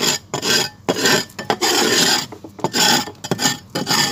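Gritty red soil being scraped and rubbed by hand, a run of short, uneven rasping strokes.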